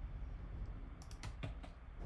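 A few quick keystrokes on a computer keyboard, about four clicks starting about a second in, as an at sign is typed before a character name.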